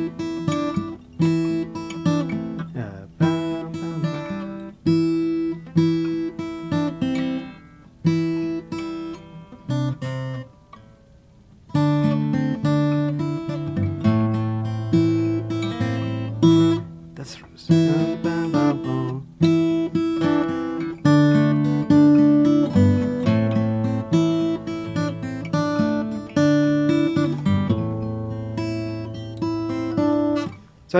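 Steel-string acoustic guitar fingerpicked in a desert blues style: a short phrase of plucked notes over a thumbed bass, repeated over and over. The playing lulls briefly about ten seconds in, then picks up again.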